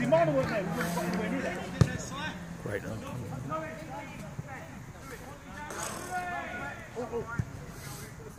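Distant shouts of players on an open football pitch, with the sharp thud of a football being kicked about two seconds in and a second, lighter kick near the end.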